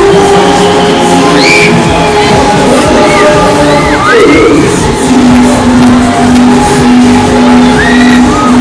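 Loud dance music played over a fairground ride's sound system, with a low repeated note coming in about five seconds in, and riders on the spinning Break Dancer whooping and screaming over it.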